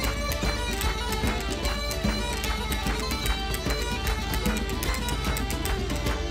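Lively Irish traditional dance tune played by a folk band, with melody instruments over a quick, steady beat.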